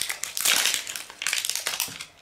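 Plastic wrapping crinkling as it is peeled off a Mini Brands surprise capsule ball, in irregular rustles that are loudest in the first second.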